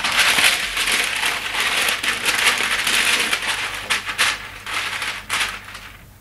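A sheet of baking paper crinkling and rustling as it is handled and smoothed over a round baking tray, with many sharp crackles, dying down near the end.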